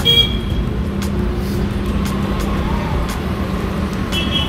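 Street traffic noise: a steady low rumble of road vehicles with a faint, even engine hum and a few light clicks.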